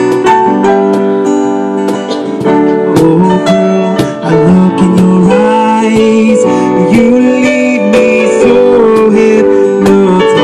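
Live acoustic band playing an instrumental passage: strummed acoustic guitar and Yamaha CP stage piano chords over sharp cajon hits.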